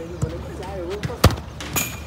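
A single sharp thud of a foot striking a football on an artificial-turf pitch, about a second and a quarter in, from a rabona kick aimed at the crossbar.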